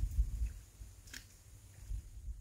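Quiet outdoor background with a faint low rumble and one soft click about a second in.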